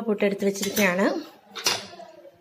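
A utensil clinking against a ceramic serving plate, with one sharp clink near the end, as puttu is served. A person's voice is speaking over the first half.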